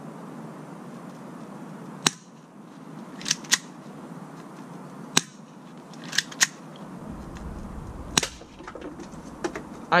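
Spring-action airsoft pistol, a G17 replica, being fired: a series of seven sharp clicks, single ones about three seconds apart with two quick pairs of clicks between them.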